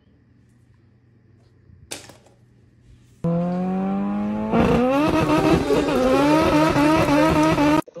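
Rubber chicken squeaky toy squeezed into a long, loud honking screech that starts about three seconds in, rises slowly in pitch, grows louder and wavers from about four and a half seconds, and cuts off sharply just before the end. A short click about two seconds in.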